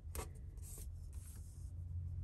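Fingers pressing and rubbing a paper sticker down onto a planner page: a light tap about a fifth of a second in, then faint paper rubbing, over a steady low hum.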